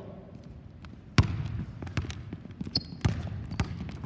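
Basketball dribbled hard on a hardwood gym floor: about five sharp bounces ringing in the hall, the first and loudest about a second in.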